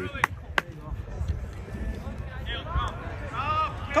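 Open-air sideline ambience: a few sharp knocks in the first two seconds, fainter shouts from distant voices later on, and a steady low rumble underneath. A close man's voice cuts in right at the end.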